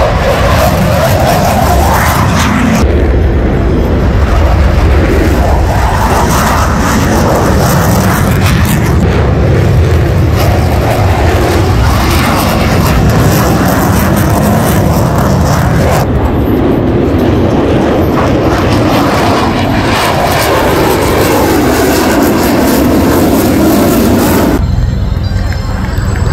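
Blue Angels F/A-18 Super Hornet jet engines running loud and steady as a jet takes off and climbs past, the pitch rising and falling slowly as it moves.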